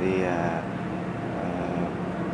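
A man's drawn-out 'thì', then a pause filled by a steady background engine hum.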